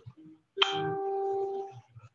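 A single steady ringing tone with a sharp start, lasting about a second.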